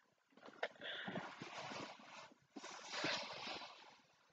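Hands rubbing and sliding over a cardboard advent calendar box, a scraping rustle in two stretches with a short break between them.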